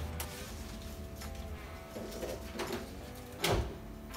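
A mould being opened by hand: its straps are unfastened and the mould pieces handled, giving light clicks and scrapes, with one louder knock about three and a half seconds in.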